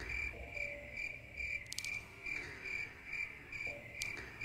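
Cricket chirping, a high chirp repeating steadily about twice a second. It is laid over a silent pause as a comic sound effect for an awkward silence.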